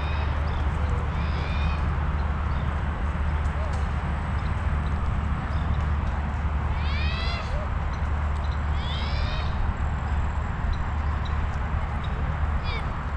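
Steady wind rumble on a moving camera's microphone over the rolling noise of a bicycle on a paved path. A few short, high calls from an animal stand out, clearest about seven and nine seconds in.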